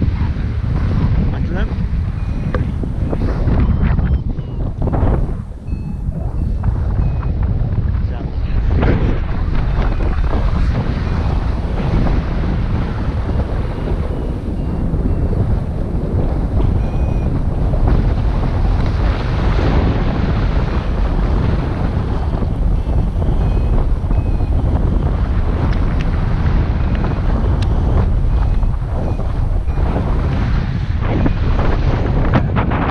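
Wind rushing over the camera microphone in flight under a paraglider: a loud, steady low rumble that swells and eases in gusts, briefly easing about five seconds in.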